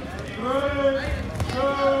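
Two drawn-out shouts from people beside a wrestling mat, each about half a second long, with a few thumps of wrestlers' feet on the mat.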